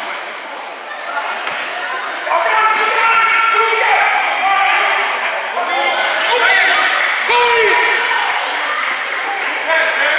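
Basketball bouncing on an indoor gym floor during play, among overlapping shouts and chatter from players and spectators that echo in the large hall.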